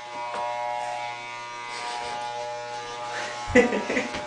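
Electric hair clippers running with a steady hum.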